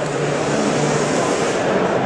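Steady background noise of a large hall: a continuous rushing hiss with a low hum beneath it and no distinct strikes or events.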